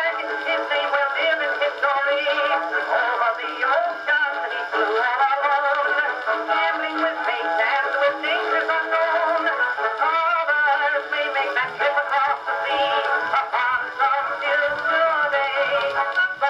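An Edison cylinder phonograph playing a Blue Amberol cylinder recording of a song with band accompaniment. The playback has a thin, boxy tone with no bass.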